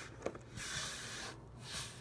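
Soft rustling and sliding as a pen is worked out of a handmade traveler's notebook, with a small click near the start and two brief scrapes.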